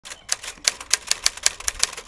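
Typewriter keys clacking in a quick, uneven run of about six strokes a second: a typing sound effect.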